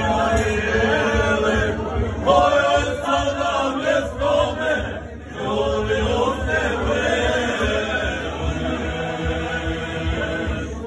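A group of men singing together unaccompanied, a folk song in long held lines, with a short break for breath about five seconds in.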